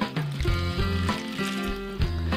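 Background music with held notes over water poured from a watering can onto expanded clay pebbles in a glass dish.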